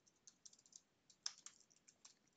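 Faint keystrokes on a computer keyboard: a scattering of soft, irregular taps, the loudest a little past a second in.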